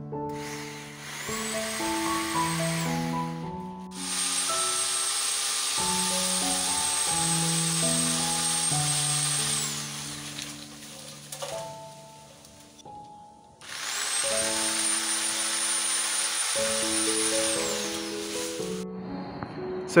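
Sun Joe SWJ803E 8-amp electric pole saw running in three spells while cutting tree branches, each with a high motor whine that rises as it spins up and falls away as it stops. Background piano music plays throughout.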